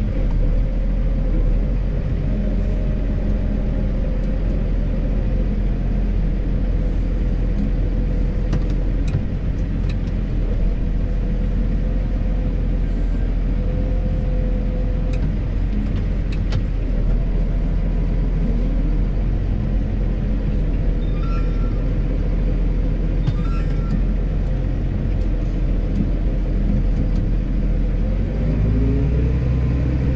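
Case Puma 155 tractor's six-cylinder diesel engine running steadily under load while pulling a seedbed cultivator, heard from inside the cab. The engine note shifts near the end.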